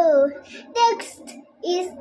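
A young girl's voice: a long drawn-out note falling in pitch that ends just after the start, then a few short vocal sounds.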